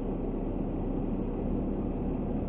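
Automated side-loader trash truck's diesel engine running steadily, a low even drone heard close up from the truck's side.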